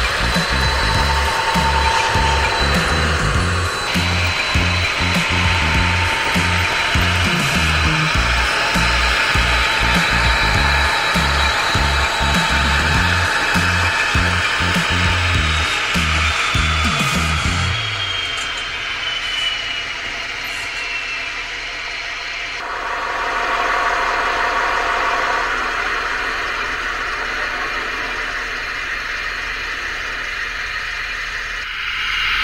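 Music with a heavy beat plays over the steady whir of H0 model diesel locomotives. About two-thirds of the way in the music stops, leaving the sound-decoder diesel engine sound of the model class 218 locomotives, heard through their small speakers, along with their running noise.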